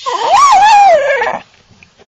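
A dog giving one long vocal call, its pitch rising and then falling, lasting about a second and a half.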